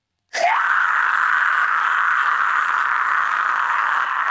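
Isolated deathcore vocal stem: after a moment of silence, one long, steady harsh scream begins about a third of a second in and runs on unbroken.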